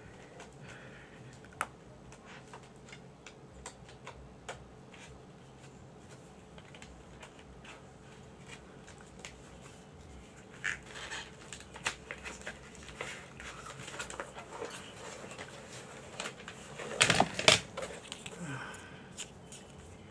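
Scattered light clicks and rustles of a CD case and its paper booklet being handled, over a faint steady background hum, with a short louder burst of noise about seventeen seconds in.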